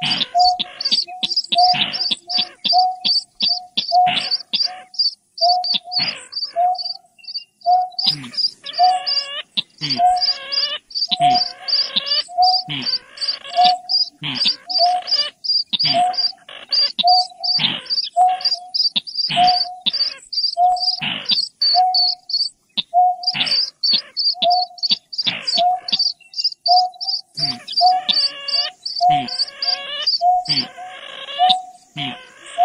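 Recorded calls of greater painted-snipe and a rail playing together as a bird-lure track: a steady run of short notes about two a second, rapid high chirps about three a second, and harsher grating calls in between, repeating without a break.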